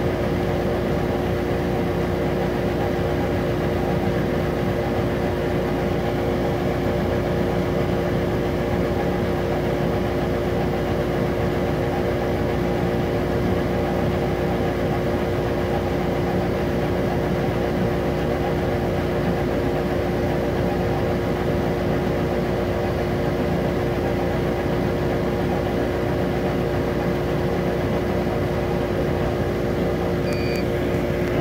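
Epilog laser engraver running while its head engraves across a knife blade: a steady machine hum with several constant tones and no change in level.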